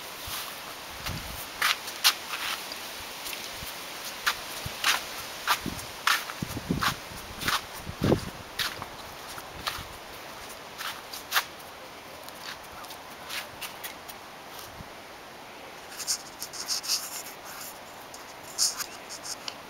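A puppy's claws clicking and tapping irregularly on stone paving slabs as it walks about, with a few soft low thumps in the first half and a quick run of sharper clicks near the end.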